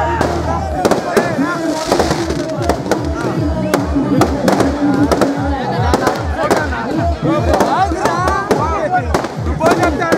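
A string of firecrackers going off in many irregular sharp cracks, amid loud crowd shouting and music with a steady low beat that comes in about a second in.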